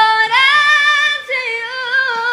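A woman singing a slow melody, holding long notes with only slight changes of pitch.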